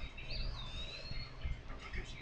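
A single thin, high whistle-like chirp about a second long: it dips in pitch, then slowly rises again, over a steady low hum.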